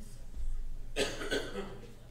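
A person coughing: two short coughs about a second in.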